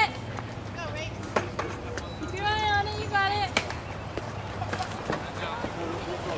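A high-pitched voice calling out in drawn-out tones about halfway through, with fainter voices around it and two sharp knocks, one before and one just after the call.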